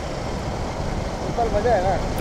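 Steady wind and road noise from a Suzuki Gixxer 250 motorcycle riding along at road speed. A voice briefly starts near the end.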